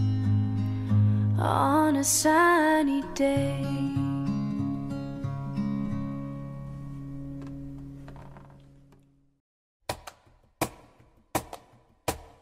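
End of an acoustic cover song: a sung phrase with vibrato over acoustic guitar, then the guitar's last chord ringing out and fading to silence about nine seconds in. Near the end, sharp clicks at a steady beat, about one every 0.7 seconds, start the next track.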